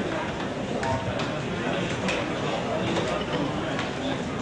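Indistinct voices and chatter in a large, echoing hall, with a few light clicks or taps.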